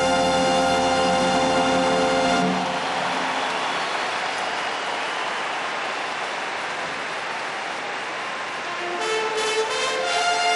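A brass band holds a final chord that cuts off about two and a half seconds in, followed by steady audience applause at the end of the dance. Brass music starts up again near the end.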